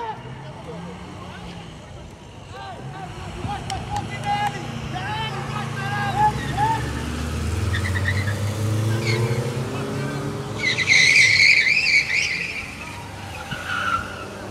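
A car driving along the street, its engine growing louder over several seconds, then a high wavering tyre squeal for about two seconds near the end.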